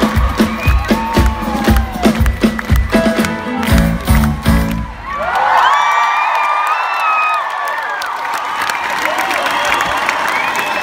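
Live band playing with a steady drum and bass beat, stopping suddenly about five seconds in as the song ends. The crowd then cheers, screams and claps.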